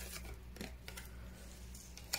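Faint brushing and a few light ticks of tarot cards being handled on a wooden table, over a low steady hum.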